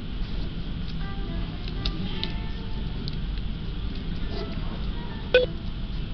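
Restaurant dining-room ambience: light background music in short melodic notes over a steady low room rumble. A sharp clink with a brief ring stands out about five seconds in.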